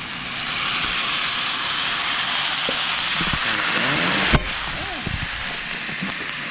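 Chicken stock hitting a hot pan of browned chicken, hissing and sizzling loudly as it boils up. After about four seconds a single sharp knock, and the sizzle carries on more quietly.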